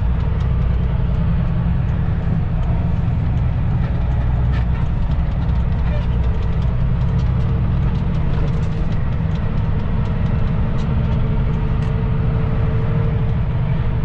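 Kenworth W900 crane truck's diesel engine running steadily while the truck is driven, heard from inside the cab as a loud, even drone.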